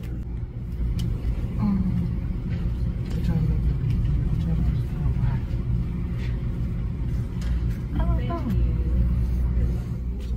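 A steady low rumble, with faint murmured voices a few times.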